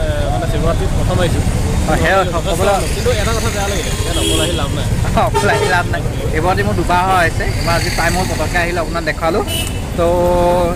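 Men talking close to the microphone over a steady low rumble of road traffic and crowd noise.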